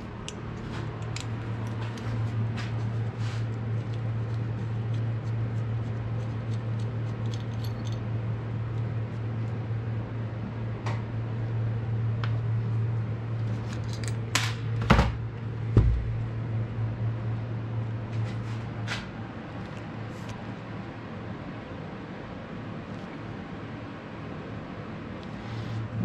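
Screwdriver and small metal parts clicking and tapping as a KTM SX 85 carburetor is taken apart, with a sharper knock about fifteen seconds in. A steady low hum runs underneath and fades somewhat in the last third.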